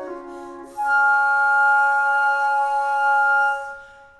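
Three flutes playing a slow held passage: a soft low chord, then about a second in a louder sustained chord with a high note on top, which fades away near the end.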